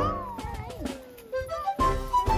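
Background music broken by a comic sound effect: a single whistle-like tone that slides slowly downward for about a second and a half. The music comes back in near the end.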